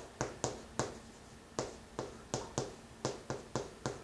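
Chalk tapping against a chalkboard while handwriting: about a dozen sharp, irregular taps as each stroke of the characters is made.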